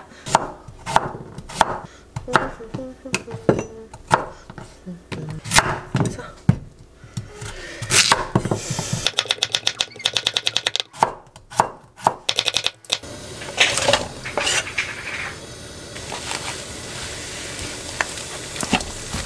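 Chef's knife chopping carrot and other vegetables on a wooden cutting board, with irregular knocks of the blade on the board. About nine seconds in comes a fast, even run of chops. In the last few seconds a steady hiss takes over as onions fry in a pan.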